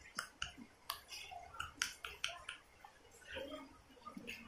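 A baby handling and mouthing a plastic-and-silicone teether: a quiet scatter of short sharp clicks and wet smacks, about half a dozen in the first two and a half seconds.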